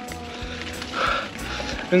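Soft background music with steady held notes over a low rumble of wind and rolling from a bicycle ride, with a brief higher sound about a second in.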